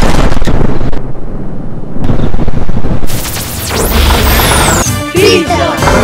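Dramatic sound effects of the ground crashing apart: heavy booms and a deep rumble with debris noise, laid over music, with falling whooshes around the middle.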